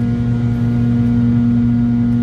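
Airliner cabin noise in flight: the steady drone of the jet engines and rushing air, with an even low hum that does not change.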